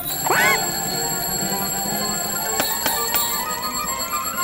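Cartoon sound effects over light background music: a quick upward swooping glide about a third of a second in, a bell-like ringing, and a few sharp clicks around three seconds in.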